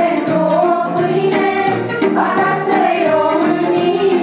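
Music: a choir singing, several voices holding notes together.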